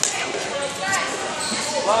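Voices and calls echoing in a large gymnasium, with a sharp click right at the start.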